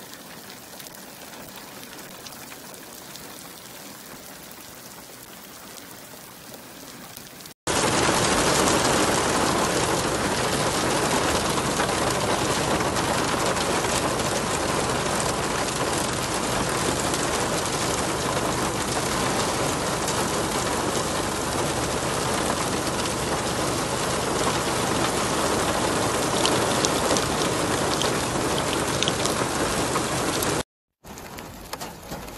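Rain falling on wet ground, at a moderate level; about a quarter of the way in it cuts abruptly to a much louder, dense, heavy downpour that holds steady at that level.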